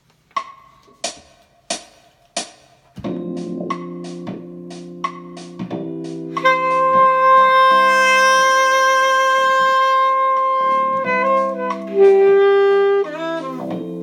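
A backing track counts in with four evenly spaced clicks, then starts a smooth-pop groove of sustained keyboard chords and bass. An alto saxophone enters about six seconds in with one long held note, then moves to a shorter, brighter note near the end.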